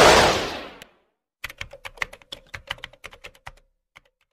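Outro sound effects: a whoosh that swells and fades in the first second, then a rapid run of typewriter-style key clicks, about ten a second for two seconds, as text is typed on screen.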